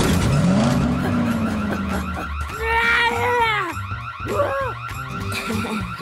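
Cartoon car engine sound effect: a sudden start and a low engine note that rises and then holds for about two seconds, over steady background music, followed by a character's wordless cry about three seconds in.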